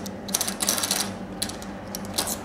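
Small metal parts of an IR liquid cell clicking and rattling as they are handled and taken apart: a quick run of clicks in the first second and another about one and a half seconds in, over a low steady hum.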